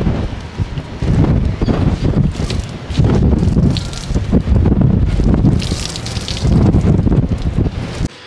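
Wind buffeting the microphone in loud, uneven gusts, with water splashing and dripping as a soaked towel is wrung out over a hot tub.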